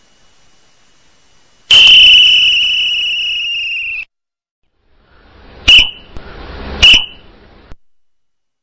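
A drill whistle blown as a signal: one long steady blast of about two seconds, then two short sharp blasts about a second apart.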